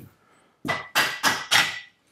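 A plastic-faced hammer taps the barrel of a Kommando carbine four times, about three blows a second, starting about half a second in, with a faint metallic ring. It is driving a stuck barrel back into the breech to free it.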